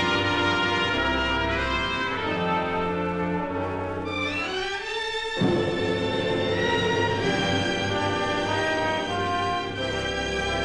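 Orchestral instrumental introduction of a recorded Portuguese-language ballad, before the voices come in. About five seconds in, a short rising passage leads into a sharp new entry of the orchestra.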